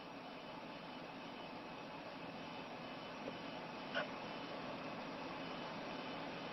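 Faint, steady background hiss from the replayed recording during a pause in the talk, growing slightly louder, with a small click about four seconds in.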